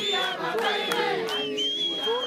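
Congregation singing an a cappella hymn in Shona, many voices together with high voices held above the rest.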